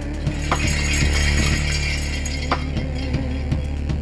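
Synthesizer music: a sustained deep bass drone under a shimmering, jingling high layer, with sharp struck accents about two seconds apart.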